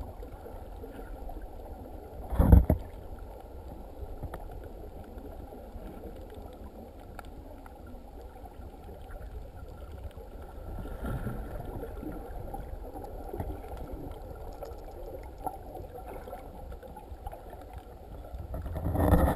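Underwater noise picked up by a camera in shallow seawater: a steady low rumble and hiss, with one loud short burst about two and a half seconds in and a softer swell around eleven seconds.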